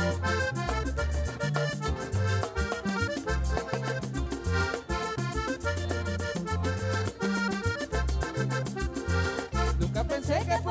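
Panamanian música típica played live: a red button accordion leads an instrumental passage over moving bass notes and steady percussion.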